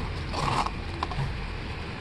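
Corrugated cardboard box and packing tape being pulled and torn open by hand: a short ripping sound about half a second in, then a few light clicks and rustles of the cardboard.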